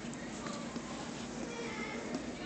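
Steady low background hubbub of a large store, with faint distant voices.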